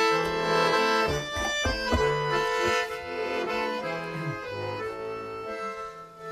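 Bayan (Russian chromatic button accordion) playing the instrumental introduction of a folk song: a sustained melody over changing bass notes, before the singing comes in.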